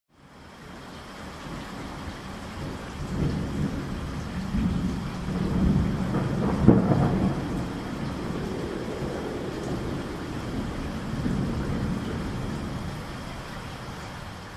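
Steady rain with rolling thunder. The rumble swells from about three seconds in to a peak about halfway through, then eases back to steady rain.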